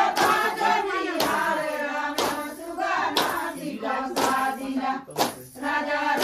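Chhattisgarhi suā folk song sung in unison by a group of women, with everyone clapping together about once a second to keep the beat of the dance.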